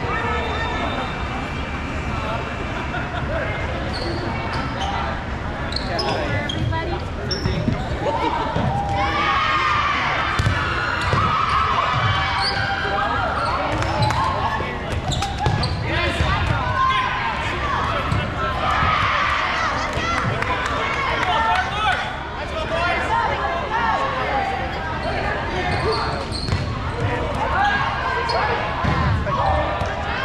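Dodgeballs thudding and bouncing on a gym court, with players shouting and calling across the court, echoing in a large hall. The calling grows louder and busier about a third of the way in.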